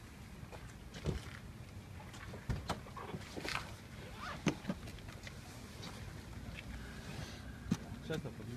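Handling noise from a handheld camera carried on the move: clothing rustle and footsteps with a series of sharp knocks and clicks, the loudest about four and a half seconds in and again near the end.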